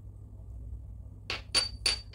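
Small ceramic dish clinking three times against ceramic, with a short high ring after the last two clinks, over a low steady hum.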